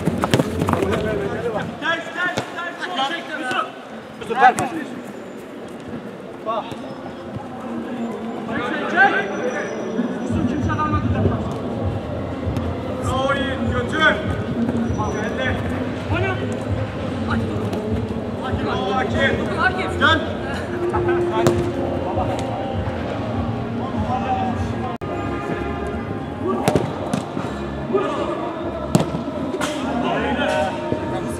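Footballers calling and shouting to one another during a small-sided match ("gel, gel!"), with a few sharp thuds of the ball being kicked.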